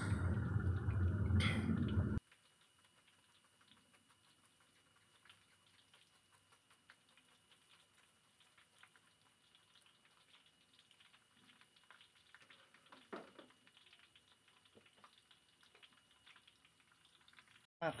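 Faint scattered crackles of banana slices frying in a wok of oil, near silence otherwise. It opens with about two seconds of low rushing noise that cuts off abruptly.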